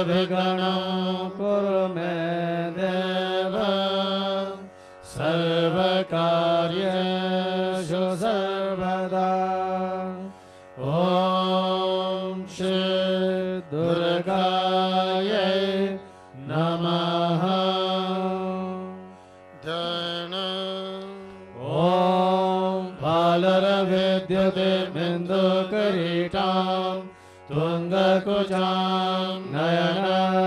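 Devotional mantra chanting sung to a slow melody over a steady drone. The phrases last a second or two each, with short breaths between them.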